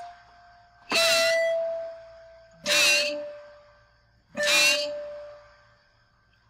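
Three single melody notes played on a digital keyboard synthesizer, about a second and a half apart. Each is struck and left to ring and fade; the second and third are a little lower in pitch than the first.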